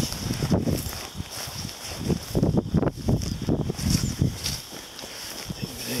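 Footsteps of a person walking through tall dry prairie grass and brush, the stems rustling and swishing against the legs in irregular strides. It quietens after about four and a half seconds.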